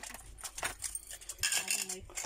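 Metal keyring keychains clinking and jangling as they are set down into a wooden box: a run of light metallic clicks, loudest near the end.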